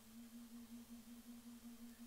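A faint single low tone held steadily at one pitch with a quick wavering pulse, after a small upward slide as it begins.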